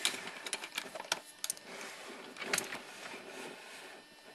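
Water electrolysis cell producing gas, heard as irregular clicking and crackling over a faint fizz.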